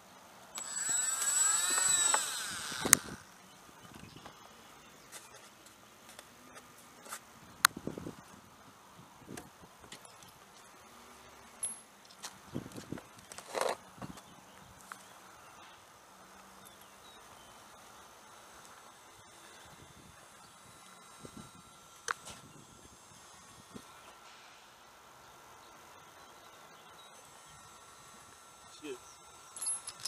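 An E-flite brushless electric motor on a large RC model plane runs up briefly near the start: a steady high whine with a wavering squeal over it, lasting about two seconds. The motor was said to need a drop of oil. After that there are only a few small clicks and handling sounds.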